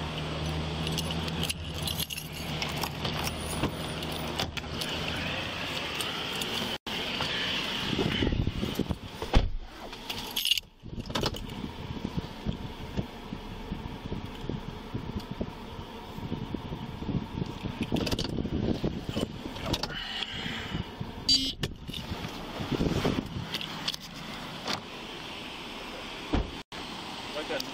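Jingling and rustling of a police officer's keys and duty gear against a body camera as he moves about and gets in and out of a Ford police SUV, with the vehicle's engine running. A sharp thump comes about nine seconds in.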